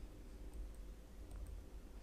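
Quiet room tone with a low steady hum and a faint single click about one and a half seconds in.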